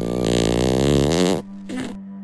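Fart sound effect: a loud, wavering pitched blat lasting about a second and a half that cuts off, then a short, fainter blat near the end.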